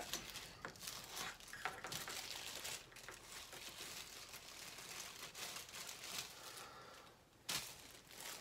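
Plastic bag of model kit parts crinkling and tearing as it is opened by hand, faint and continuous with small clicks, and one short sharp click near the end.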